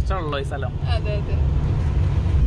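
Cabin noise of a moving Suzuki car: a steady low rumble of engine and road, with a voice over it for about the first second.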